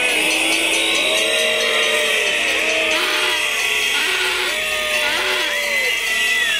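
A large demonstration crowd reacting loudly with a continuous din, many overlapping drawn-out tones rising and falling in pitch.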